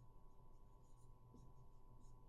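Faint strokes of a marker writing on a whiteboard, over a low steady hum.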